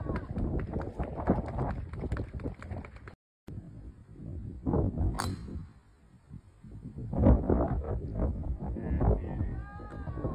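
A golf club striking a teed-up ball once, a single sharp crack about five seconds in, over loud rumbling background noise.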